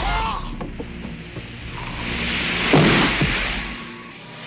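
Film soundtrack: tense music, with a loud hissing whoosh about three seconds in as a marine distress flare goes off.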